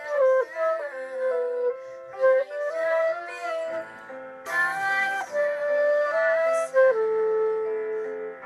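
Flute playing a pop-song melody in held notes and short runs, with other pitched accompaniment sounding underneath at the same time.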